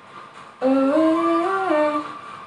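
A woman humming a short tune in a few held notes that step up in pitch and then drop, starting about half a second in and lasting about a second and a half, over faint background music.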